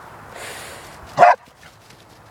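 Border collie giving one short bark a little over a second in.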